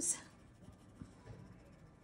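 Faint scratching of an Ohuhu marker's fine tip stroking on paper, with a light tick about a second in.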